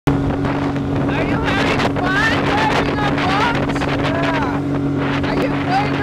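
Speedboat engine running under way at a steady, even drone, with wind and rushing water over it.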